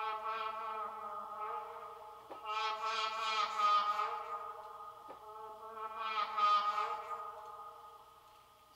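Output Exhale vocal engine playing a held synthetic vocal chord, a choir-like pad on steady pitches that swells brighter twice.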